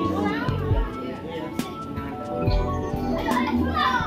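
Children's voices and chatter at play, over steady background music.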